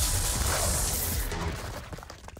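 Cartoon action sound effects: a dense run of blasts and impacts over a music score, fading away near the end.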